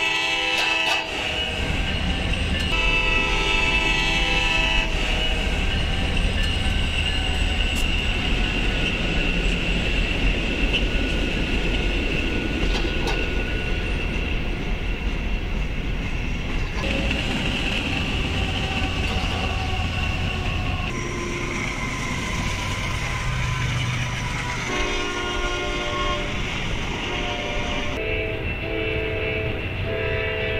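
Diesel locomotive air horns sound several blasts of a few seconds each: one just after the start, then two more near the end. They play over the steady low rumble of passing trains and their diesel engines.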